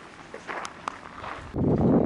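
A few footsteps on a dirt path. About three-quarters of the way through, loud wind buffeting the microphone takes over.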